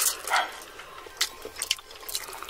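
Close-miked eating of spicy instant noodles: wet slurping and mouth sounds, with a short loud slurp just after the start and a few sharp clicks of utensils later on.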